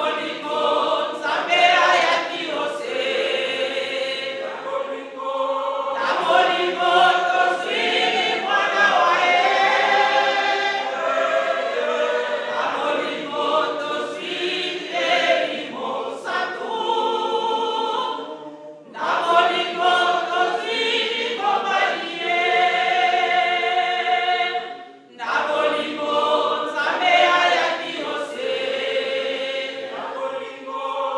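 A group of voices singing a church hymn together, in long phrases broken by two brief pauses in the second half.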